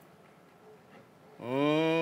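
A single drawn-out cow moo, starting about one and a half seconds in after a quiet stretch, held at a steady low pitch.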